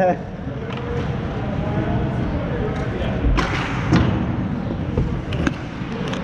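Ice hockey on-ice sounds: skates scraping the ice and sticks knocking, over a steady rink noise. There is a louder scrape with a thud about three seconds in and two sharp clicks near the end, with faint voices in the background.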